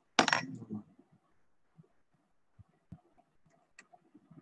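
A brief clatter just after the start, lasting about half a second, then a few faint scattered knocks.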